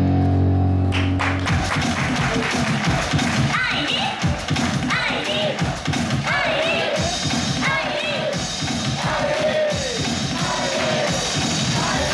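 A female idol singer performing a J-pop song into a handheld microphone over a loud backing track. A held chord breaks about a second in into a driving beat, and her sung phrases come in over it a few seconds later.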